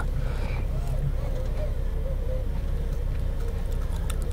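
Doosan 4.5-ton forklift's engine running steadily, heard from inside the cab.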